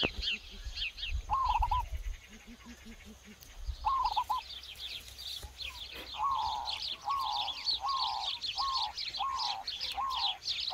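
Birds calling: a steady run of quick, high chirps, with a lower, falling call heard a few times early on and then repeated about twice a second from about six seconds in.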